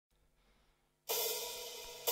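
Silence, then about a second in a single cymbal struck once, ringing and slowly fading as the track opens.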